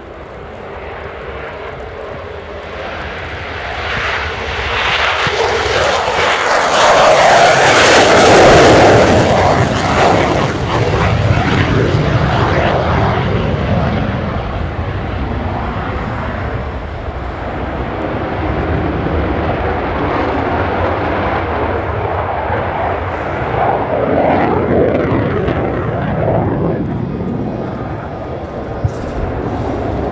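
A Royal Danish Air Force F-16AM's single Pratt & Whitney F100 turbofan running in full afterburner on take-off and climb-out. It builds to its loudest as the jet passes, about seven to ten seconds in, then stays loud and steady as the jet climbs and turns away.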